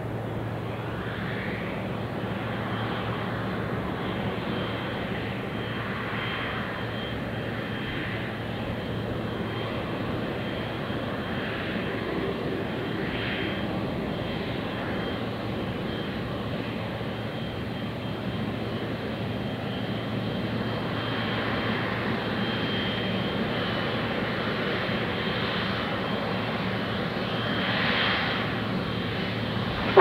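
Boeing 777-300ER's twin GE90-115B turbofans running at low thrust as the airliner lines up on the runway: a steady jet whine over a low drone, swelling slightly near the end.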